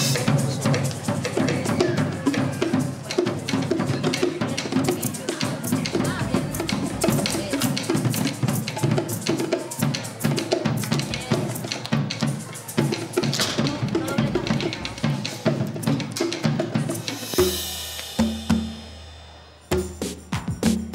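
Group percussion jam on a drum kit, congas, bongos and cymbals, many players striking at once in a busy rhythm. Near the end the drumming stops, a held sound fades out, and music with a steady beat starts right at the end.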